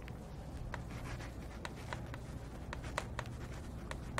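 Writing on a lecture board: a string of short, light taps and strokes, about ten in four seconds, over a steady low hum.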